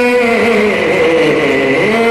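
A man chanting a naat in long, drawn-out notes through a microphone, his pitch sliding down and then back up near the end.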